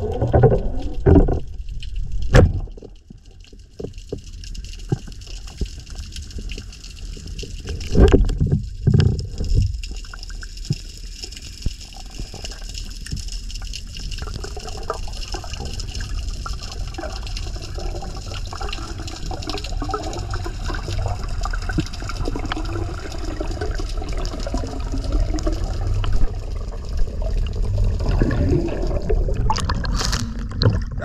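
Water sound heard underwater: a steady low rumble, with louder bubbling gurgles near the start and again about eight seconds in.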